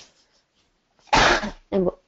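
A single short cough about a second in, followed straight away by a spoken word.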